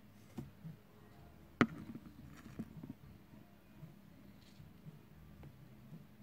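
Faint clicks and light taps from metal feeding tweezers being handled in a terrarium, with one sharp click about a second and a half in.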